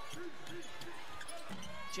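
A basketball being dribbled on a hardwood court during live game play, under faint broadcast commentary.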